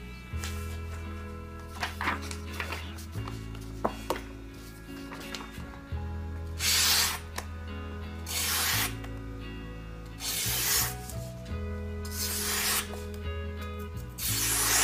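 A Fuji Japanese cleaver's steel blade slicing through a sheet of paper held in the air, four quick cuts about a second and a half apart in the second half. It cuts cleanly, a sign of a very sharp edge. Background music plays throughout.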